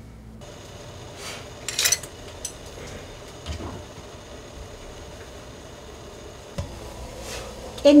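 Faint steady hiss of a lidded stainless-steel pot steaming on the stove, with a few light clinks of dishes and utensils, the sharpest about two seconds in.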